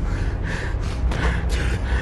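A man's hard, gasping breaths, about one every half second, after a fistfight, over a low steady rumble.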